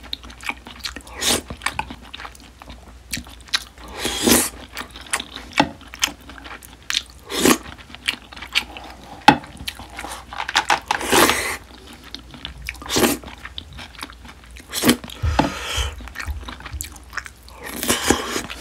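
Close-miked chewing of marinated grilled beef short ribs (LA galbi) and rice: wet mouth sounds with irregular smacks and clicks, and louder chewing bursts every second or two.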